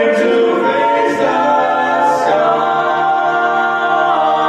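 Barbershop quartet of four men's voices singing a tag a cappella in close four-part harmony, holding long sustained chords that shift about a second in and again a little past two seconds.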